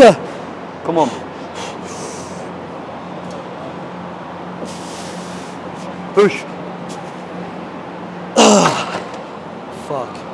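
A man's strained grunts and groans while pushing heavy reps on a plate-loaded chest press machine: a loud yell at the start, a shorter grunt about a second in, another around six seconds, and a long falling groan near the end, with breathy exhales between, over a steady low hum.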